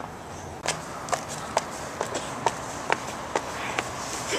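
High-heeled shoes clicking on an asphalt driveway as someone walks: about eight sharp, evenly paced steps, roughly two a second.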